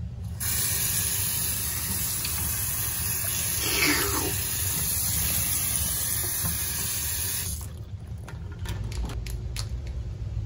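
Bathroom sink faucet running: a steady stream of tap water splashing into the basin and down the drain, starting just after the handle is turned and shut off suddenly about seven and a half seconds in.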